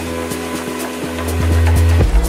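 Electronic dance music, melodic techno: held synth tones over a steady beat of about four ticks a second. The low bass thins out and then swells back in near the end.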